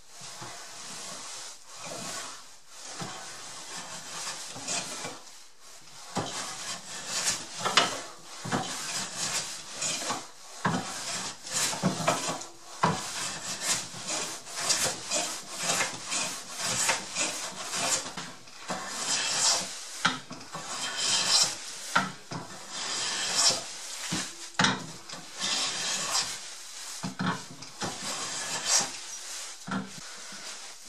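Hand plane taking fine shavings off the edge of a maple board in repeated strokes, a scraping hiss on each pass, cleaning off table-saw burn marks.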